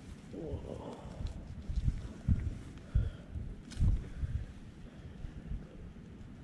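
Irregular low thumps and rumbling from close handling of the microphone, loudest three times in the middle of the clip, with faint rustling of dry pine needles as a hand picks through burnt ground for morels.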